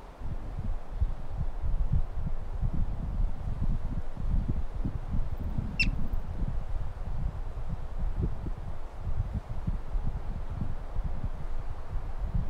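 Wind buffeting the microphone in gusts. About six seconds in, a yellow-bellied marmot gives a single sharp, high chirp that falls in pitch.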